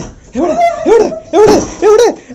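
A dog vocalizing in about four short calls, each rising and falling in pitch, roughly half a second apart.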